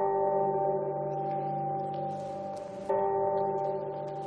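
Deep bell-like toll struck twice, about three seconds apart, each ringing on as a held chord and slowly fading, as in a sombre film score. A brief hiss or rustle sounds just before the second toll.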